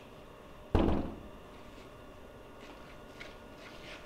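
A single loud thump about a second in, dying away quickly, against quiet room tone.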